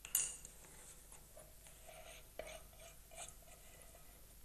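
A small metal saucepan clinking as it is picked up and handled: a sharp clank just at the start, another about two and a half seconds in, and lighter clicks between.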